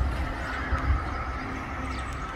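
Outdoor background noise: an irregular low rumble on the microphone, with faint high-pitched calls drifting over it.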